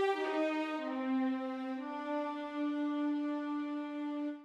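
Sampled orchestral blend of divisi violins 2 and violas with alto flute and bass flute, played from a keyboard as sustained legato chords. The voices move to new notes several times in the first two seconds, then the chord is held.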